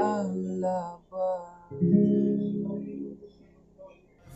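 Acoustic guitar with a capo, played with a man singing a short last phrase in the first second and a half. A final strummed chord follows just under two seconds in and rings out, fading to near silence at the end of the song.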